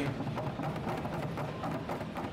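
Music from an arcade piano-tile rhythm game, with percussive notes and taps as its lit keys are played.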